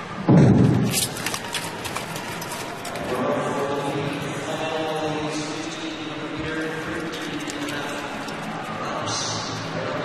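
A starting gun fires once, sharply, just after the start, setting off a short-track speed skating race. A second of quick clattering clicks follows as the skaters' blades dig into the ice on the sprint away, then steady crowd cheering.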